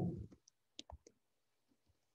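Computer keyboard keystrokes: about four short, light clicks in quick succession within the first second, as code is typed.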